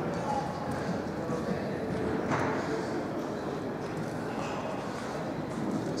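Showroom background: other people's voices talking in the distance over steady room noise, with footsteps on a hard floor.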